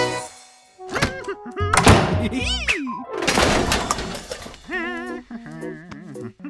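Cartoon sound effects: a quick run of sharp knocks, whooshes and sliding, wobbling pitches. Near the end a light tune with warbling notes takes over.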